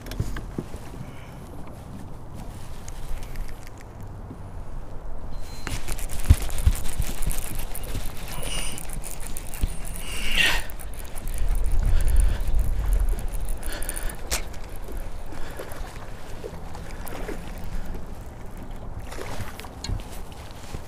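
Wind buffeting the microphone of a chest-mounted camera, with water sloshing at the boat and rustling of clothing and gear. It grows louder and rougher about six seconds in, then eases off in the last few seconds.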